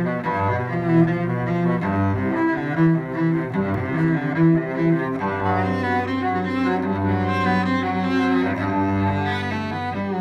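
Solo cello played with a bow, heard up close: a phrase of sustained notes changing pitch about every half second, then a long low note held through much of the second half while higher notes move above it.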